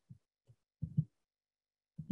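A few short, soft low thumps, spaced irregularly, with a pair close together about a second in.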